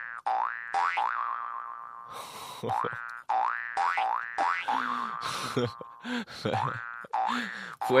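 Cartoon spring 'boing' sound effect, about a dozen times in a row: each a quick upward-sliding twang that rings on briefly, some higher-pitched and some lower.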